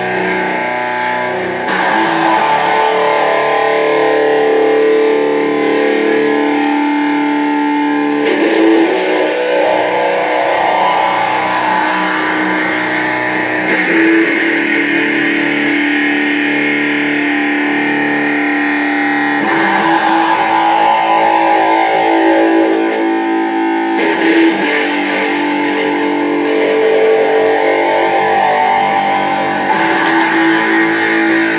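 Semi-hollow electric guitar playing a slow strummed chord intro. Each chord rings out for several seconds before the next is struck, about every five to six seconds, and the first full chord comes in about two seconds in.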